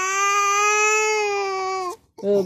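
A toddler crying: one long, steady wail that cuts off suddenly near the end.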